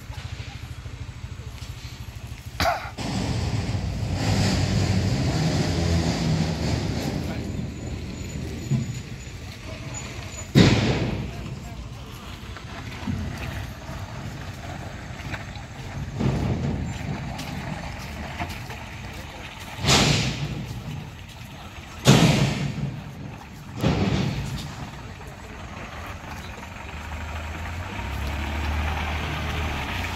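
A vehicle engine running at a muddy roadworks, a Mitsubishi minibus's engine growing louder near the end as it comes down the dirt slope toward the camera. Several loud short bursts stand out over it, the loudest about ten and twenty-two seconds in.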